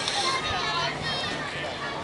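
Indistinct voices of people talking and calling out at a softball field, with several high-pitched voices, over a steady outdoor background hum.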